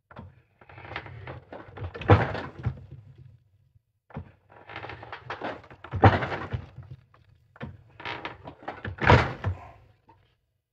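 Bench ring stretcher worked by its lever: three rounds of clunks and metal knocks as the tapered steel mandrel is forced into a coin ring to stretch it.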